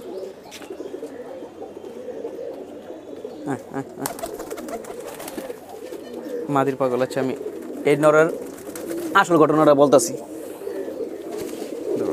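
Domestic pigeons cooing, a steady low murmur through the whole stretch.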